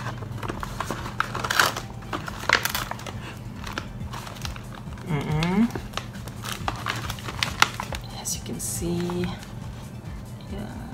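A paper-board snack bag with a plastic lining being torn open and crinkled by hand: a string of sharp crackles and rustles.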